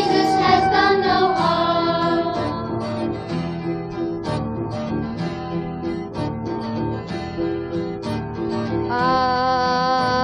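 A school choir and small instrumental ensemble perform a cantata song. A sung note fades over the first couple of seconds, then a plucked-guitar accompaniment carries the middle, and a sustained chord with slight vibrato comes in near the end.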